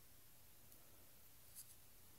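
Near silence: faint room tone, with one brief faint tick about one and a half seconds in.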